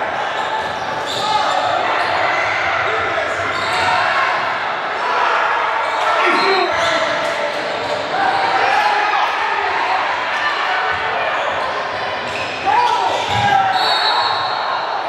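Indoor basketball game in play: the ball bouncing on the court amid players' and spectators' voices echoing in the gym. Near the end comes a short high referee's whistle.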